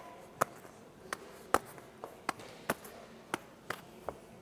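Boxing glove punches and blocks landing on hands and forearms in a quick exchange of blows: about nine sharp smacks, unevenly spaced, roughly two a second.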